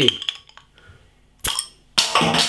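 A metal bottle opener prising the crown cap off a glass beer bottle: a few faint clicks as it grips the cap, then a sharp metallic crack about one and a half seconds in and another at the very end as the cap comes off.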